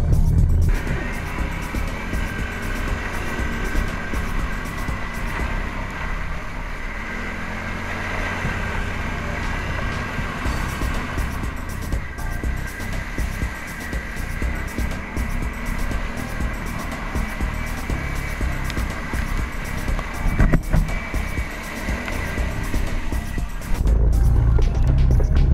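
An ATV engine running steadily as the quad is ridden over a rough dirt track.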